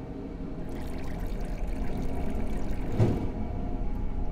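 Liquid poured from a jug into a stainless steel film developing tank, the pour starting about a second in, with a knock near the end. Faint steady background tones run underneath.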